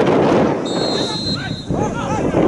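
A single referee's whistle blast, a steady shrill tone about two-thirds of a second in, lasting just over half a second. Around it, the football crowd's chatter and short shouts from spectators and players.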